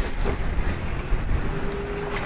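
Steady low rumble of a wooden river boat's engine running while the boat is tied up at the pier, with a faint steady hum coming in about one and a half seconds in.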